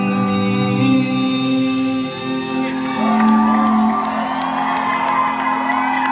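Live rock band with electric guitars holding out long sustained notes at the close of a song, with the crowd whooping and cheering over it in the second half.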